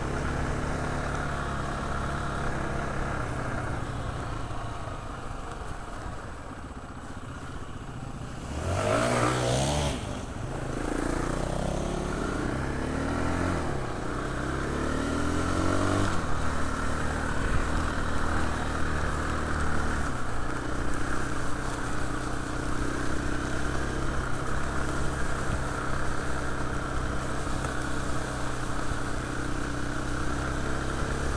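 KTM Freeride 350 single-cylinder four-stroke dirt bike engine running under way. It revs up sharply about nine seconds in, rises through several more revs over the next few seconds, then holds a steadier note.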